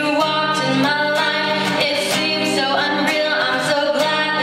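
A woman singing a slow ballad into a microphone, accompanied by an acoustic guitar playing sustained chords.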